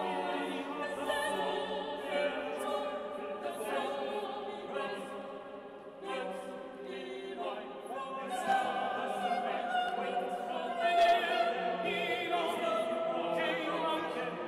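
Chamber choir singing a slow contemporary requiem in sustained chords, with several voice parts overlapping. It thins out briefly about six seconds in, then swells louder.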